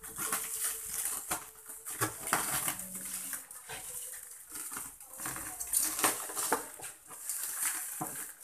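Clear plastic stretch wrap crinkling and crackling in irregular rustles and short snaps as it is cut with scissors and pulled off by hand.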